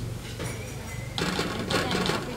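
A small plastic sachet being torn open by hand: a rasping rip in several short pulses starting a little past the middle, over a steady low hum.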